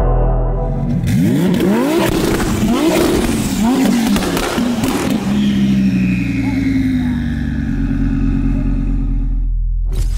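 Audi R8 V10 revved in a run of quick blips, the pitch jumping up and dropping back each time, with crackles and pops from the exhaust. The revs then fall away slowly toward idle in the second half.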